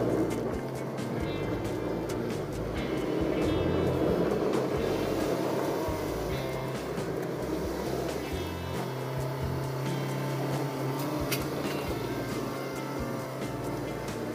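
Background music playing at a moderate, steady level over the running noise of a car, heard from inside the cabin.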